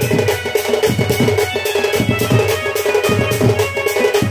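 Live folk dance music: a hand-played two-headed barrel drum (dhol) beating a quick rhythm under a steady, held melody line.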